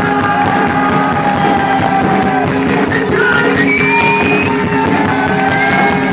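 Live rock band playing loudly and steadily, with electric guitar over drums, heard from within the audience.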